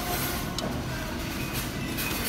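Steady restaurant room noise: a low, even hum with one faint click about half a second in.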